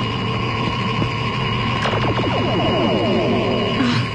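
Synthesized magic sound effect from the cartoon's soundtrack: a steady electronic drone with held high tones over a low hum, slowly growing louder. About two seconds in, a rapid cascade of falling tones joins it.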